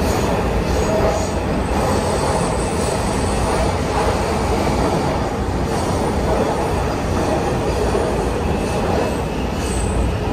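Washington Metro Breda 3000-series railcar running along the track: a steady, loud rumble of wheels and running gear, with a faint high-pitched whine at times.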